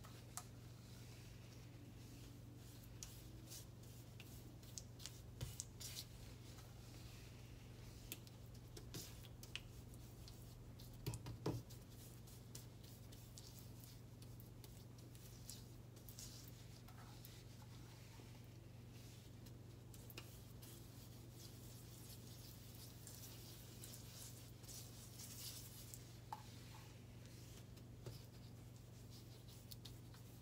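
Faint rubbing and scrubbing of a sponge working white cleaning cream over a glass-ceramic cooktop, with scattered small clicks and taps, the loudest about 5 and 11 seconds in. A steady low hum runs underneath.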